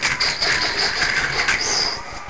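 A battery-powered TOMY toy train's small motor and gears running: a steady whir with a thin high whine and scattered rattling clicks.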